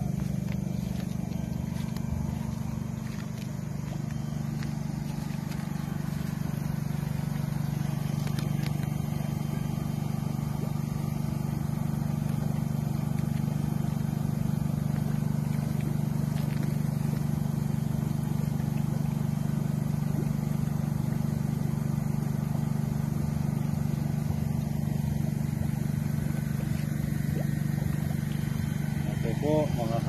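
Steady low mechanical hum that does not change throughout, typical of the aeration blower or air pump that keeps biofloc fish tanks bubbling.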